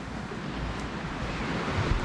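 Surf washing onto a sandy beach: a steady rushing that swells a little toward the end, with low wind buffeting on the microphone.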